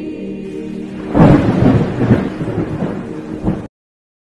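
Held choral music gives way about a second in to a sudden loud rumble of thunder with rain, which cuts off abruptly to silence near the end.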